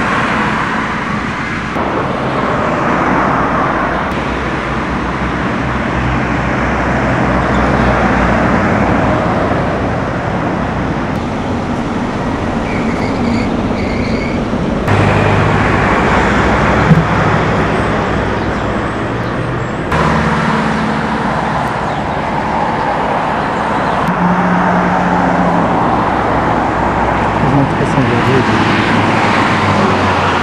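Road traffic: cars passing and engines running, a steady wash of noise that changes abruptly several times.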